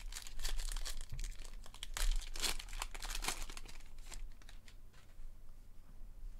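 Foil wrapper of a Panini Prizm trading-card pack being torn open and crinkled by hand: a dense run of crackles that thins out after about four seconds.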